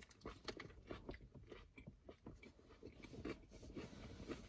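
Faint chewing of a bite of a fast-food sandwich, with small irregular crunches and mouth clicks.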